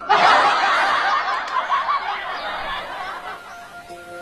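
Laughter that starts suddenly and fades away over about three seconds, followed near the end by the first notes of music.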